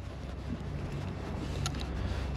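Steady low mechanical hum, like an engine or machine running at an even speed, with a couple of faint ticks near the end.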